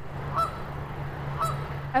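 Canada geese honking: two short honks about a second apart, over a steady low hum.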